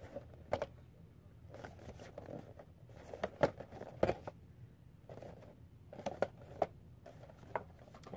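Cardboard Funko Pop boxes with plastic windows being handled and turned over: scattered taps, knocks and rustles, the loudest a pair of knocks three to four seconds in.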